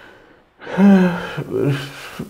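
A man's audible intake of breath, then his voice as he starts speaking again, beginning with a drawn-out sound that falls in pitch.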